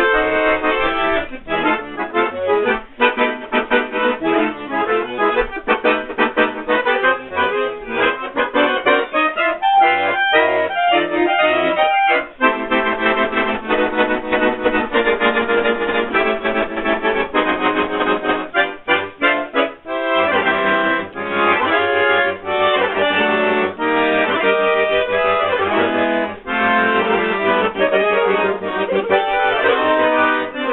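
Solo accordion playing a fast piece of dense chords and quick runs of notes, with a few short breaks in the phrasing; about twenty seconds in, held bass notes come in beneath the melody.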